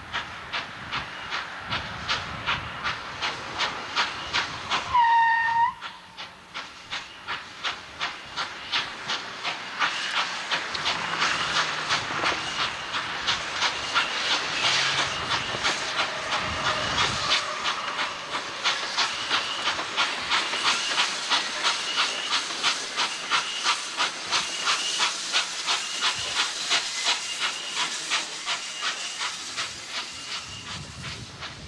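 Norfolk & Western 611, a J-class 4-8-4 steam locomotive, working slowly with a steady beat of exhaust chuffs, about two a second, growing louder from about ten seconds in as it nears. A short, high whistle toot sounds about five seconds in.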